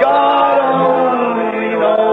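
Slow hymn singing, with long held notes that glide from one pitch to the next.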